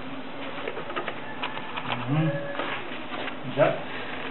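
Indistinct voices in a small room, with a short low vocal sound that rises and falls about two seconds in and a louder brief one near the end, over light scattered clicks and rustles.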